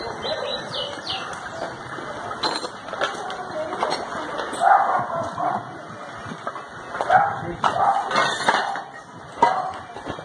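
Indistinct voices of people talking, with a dog barking several short times in the second half.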